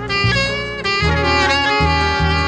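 Early-1960s bossa nova jazz: a horn section of saxophone and brass playing held chords over a moving bass line.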